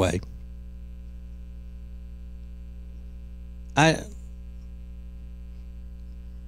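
Steady electrical mains hum with a buzz of many evenly spaced overtones, carried in the audio, with one short spoken word about four seconds in.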